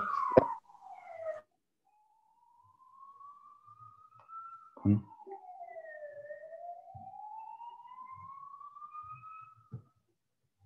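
A siren wailing faintly, heard through a video-call microphone: a single tone slides slowly down and back up between a high and a lower pitch, in cycles of a few seconds. A brief low thump about five seconds in is the loudest sound.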